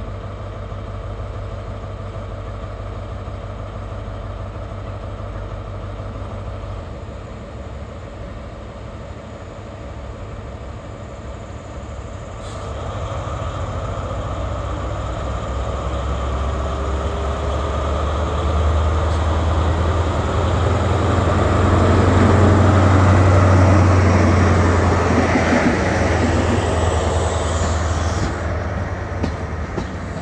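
A Class 43 HST power car's diesel engine, running steadily at first and then opening up about halfway through as the train pulls away. It grows into a loud, deep drone that peaks as the power car goes past, followed near the end by the coaches rolling by.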